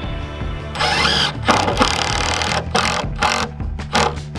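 Cordless drill running into the wooden plank tabletop in several short bursts, starting about a second in and stopping before the end, over steady background music.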